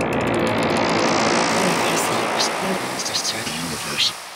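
Psydub electronic track: a dense noise sweep rises in pitch over the first second or so, then a spoken-voice sample sits over the music.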